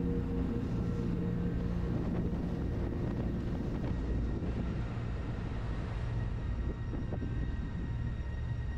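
BMW R1200RT's boxer-twin engine running at a steady cruise, with wind and road noise on a bike-mounted camera.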